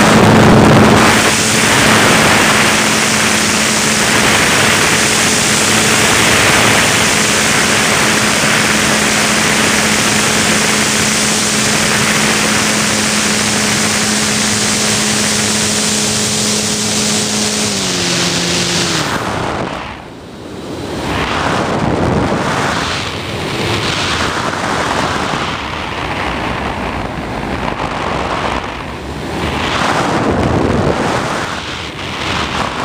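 Airflow rushing over a camera mounted on the nose of a Discus 2C RC sailplane in flight, a loud steady wind noise. A steady low hum runs underneath for most of the first two-thirds, drops in pitch in two steps and stops. Then the rush dips sharply and goes on weaker and gustier.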